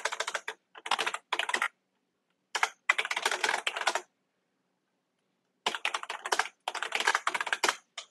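Typing on a computer keyboard: quick runs of key clicks in several bursts, with a pause of about a second and a half midway.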